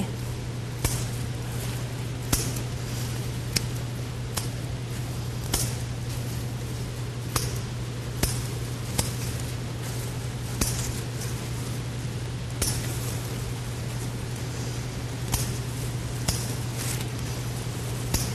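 Scissors snipping the stems of an ivy houseplant, with sharp short snips coming irregularly about once a second, over a steady low hum.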